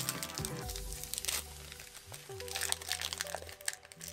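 Foil wrapper of a Pokémon card booster pack crinkling and crackling as it is worked open by hand, over background music with sustained notes.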